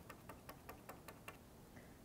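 Faint clicking of an Apple Barrel multi-surface paint pen's tip pressed repeatedly onto a paper towel, about five clicks a second, stopping about a second and a half in. The pen is being pumped to prime it so the paint flows to the tip.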